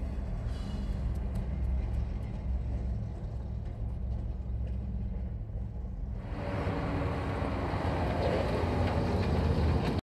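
A steady low rumble, then, about six seconds in, the running engine and tyre noise of an old flatbed truck coming up a road, growing louder as it approaches.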